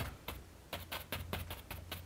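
Paint brush dabbed quickly against a stretched canvas on an easel: a run of light, irregular taps, about five a second, over a low steady hum.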